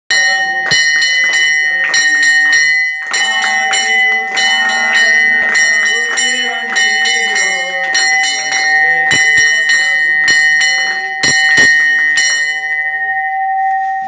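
Temple bell rung rapidly and repeatedly during an aarti, about three or four strikes a second, building a steady ringing tone. The strikes stop a little before the end and the ringing fades, with voices chanting beneath it.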